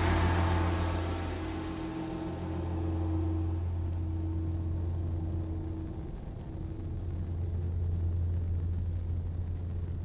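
A large gong ringing out after a strike and slowly dying away. Its bright shimmer fades over the first few seconds, while a deep low hum and a mid tone linger underneath.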